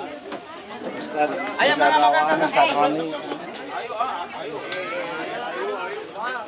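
People chattering, several voices talking at once, loudest about one to three seconds in.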